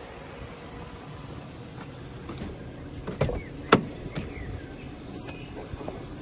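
A car door being opened: a couple of soft knocks and then one sharp latch click about halfway through, over a steady low rumble.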